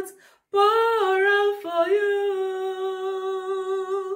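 A woman singing a communion song unaccompanied: a short breath, then one long held note with a small step in pitch about a second and a half in, held almost to the end.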